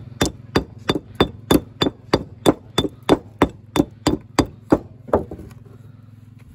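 Steel walling hammer knocking a lip off a piece of Cotswold limestone, dressing it with quick, even blows about three a second. The blows stop a little after five seconds in.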